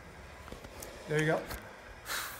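Quiet room tone, with one short voiced sound from a person midway through, too brief to be a clear word.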